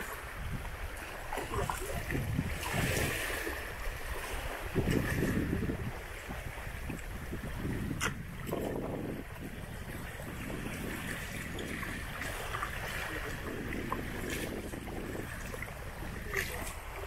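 Wind buffeting the microphone in gusts, over small waves washing and lapping at the river's edge.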